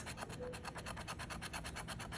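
A large coin scraping the latex coating off a scratch-off lottery ticket in rapid, even back-and-forth strokes, many a second.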